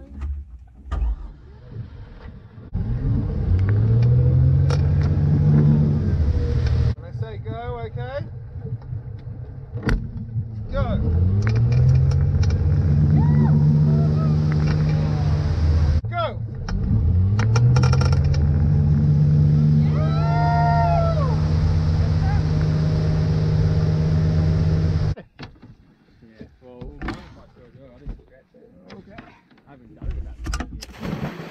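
Tow boat's engine speeding up from low revs and then holding a steady pull, three times over, as a rider is pulled up on the tow rope. The engine sound cuts off suddenly near the end, leaving quieter water and wind noise.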